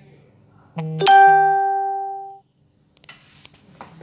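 A loud chime: a short lower note, then a higher ringing note that fades over about a second and a half before cutting off abruptly.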